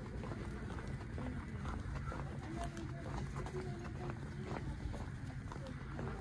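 Footsteps and small handling knocks picked up by a handheld phone while walking through a store, with faint background voices.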